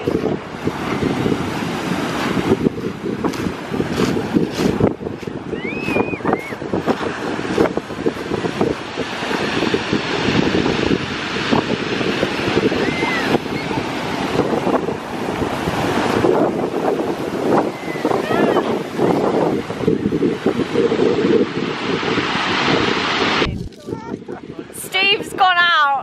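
Sea waves breaking and washing up over a shingle beach, with wind buffeting the microphone.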